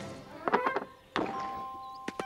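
Cartoon sound effects: a quick run of light knocks, then one heavier thunk, with a couple of held music notes afterwards.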